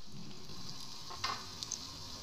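Breaded potato-and-chicken cutlets shallow-frying in hot oil in a pan: a steady sizzle, with a couple of short crackles a little after a second in.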